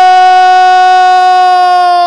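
A Brazilian TV commentator's drawn-out goal cry: one long, loud, high note held steady without a break, announcing a goal just scored.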